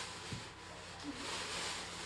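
Rustling and handling noise: a soft hiss that swells and fades as items are dug out of a bag or wrapping.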